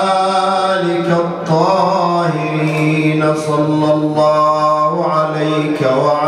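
A single man's voice chanting an Arabic mourning elegy in long held notes, the pitch sliding between them.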